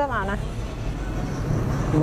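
A steady low rumble and hum of background noise, with a few words of a woman's speech at the start.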